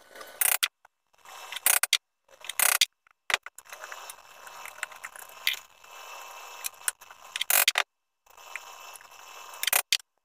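A wood chisel, pushed by hand, paring and scraping out small hinge mortises in a cherry case to square up their routed corners: a series of scraping strokes with a few short, louder cuts.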